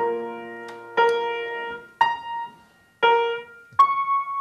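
Upright piano: chords struck one at a time about a second apart, each left to ring and fade, ending on a single high note.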